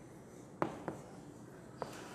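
Chalk tapping on a chalkboard as writing begins: three sharp taps, the first and loudest a little over half a second in, over faint room hiss.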